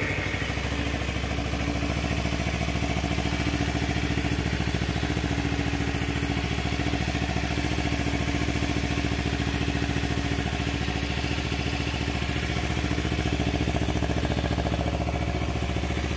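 Kawasaki Ninja 250 Fi's parallel-twin engine idling steadily at an even pitch, running smoothly.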